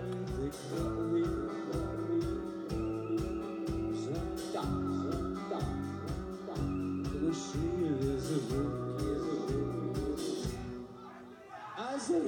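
Live rock band playing: a steady pulsing bass and drum beat under guitar, with a man's voice singing. Near the end the music thins out and dips for about a second before the band comes back in loud.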